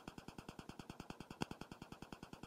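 Semi-truck diesel engine idling, heard from inside the cab as a faint, even pulsing of about a dozen beats a second, with a single sharp click about one and a half seconds in.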